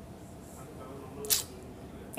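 Quiet room tone with a short, softly spoken question about a second in, ending in a sharp hissing 's'.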